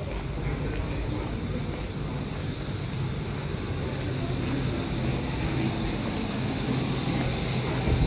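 Steady low rumble of outdoor street ambience, with faint voices in the distance.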